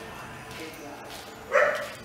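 A dog barks once, a single short, loud bark about one and a half seconds in.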